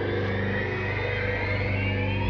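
Drama soundtrack music: a sustained low drone under a tone that rises slowly in pitch, building tension.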